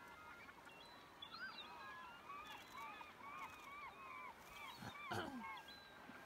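A flock of birds calling faintly, many short rising-and-falling calls overlapping throughout. A brief louder low sound falls in pitch about five seconds in.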